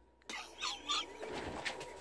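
A man laughing quietly in a few faint, high, squeaky breaths.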